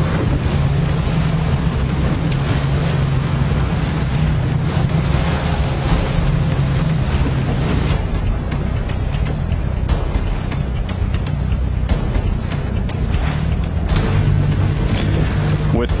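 Wind and water noise on a choppy sea over a steady low drone, the hiss fuller in the first half and thinner for a few seconds after the middle.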